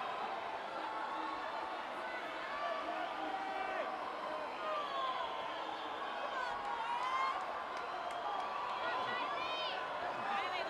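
Swim-meet crowd cheering and yelling on the swimmers during the race: many voices overlapping into a steady din, with a burst of higher-pitched yells near the end.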